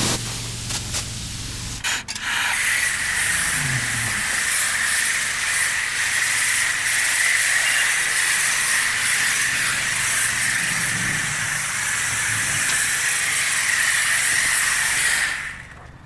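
High-pressure car wash wand spraying foam onto a car, a steady loud hiss that starts about two seconds in and cuts off suddenly shortly before the end.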